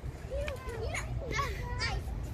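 Children's voices calling and chattering, several short high-pitched calls rising and falling in pitch, over a steady low rumble.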